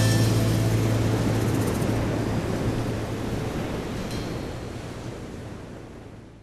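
The final chord of a rock song, struck with a cymbal crash at the very start and left to ring out over a held low bass note, fading steadily away.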